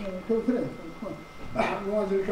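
A man speaking indistinctly, with a short, sharp noisy burst about one and a half seconds in.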